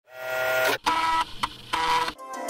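Floppy disk drive loading a disk: the drive's motor buzzes and whirrs in three spells with short breaks, and there is a single click in the middle.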